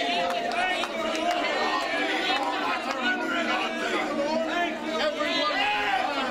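Several people praying aloud at the same time, their voices overlapping into a continuous babble of speech.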